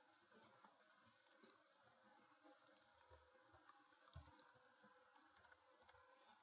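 Near silence: faint room tone with a few scattered soft clicks of a computer mouse or pen input as a word is written on screen, and a soft low bump about four seconds in.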